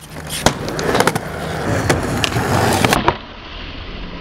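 Skateboard wheels rolling on smooth concrete, with several sharp clacks of the board against the ground. About three seconds in the sound drops abruptly to a quieter, steady rolling.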